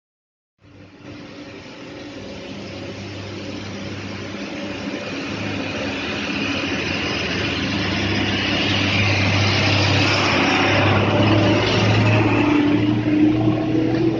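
A motor vehicle engine running and growing steadily louder, its note rising slightly near the end.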